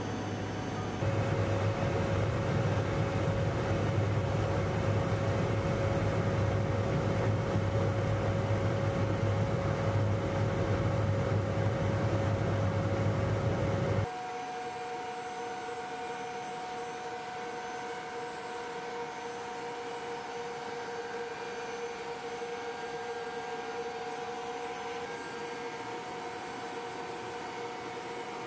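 Steady drone of a Lockheed AC-130J Ghostrider's four turboprop engines heard inside the aircraft, a low hum with a steady tone over it. About halfway through it cuts abruptly to a quieter drone with two different steady tones.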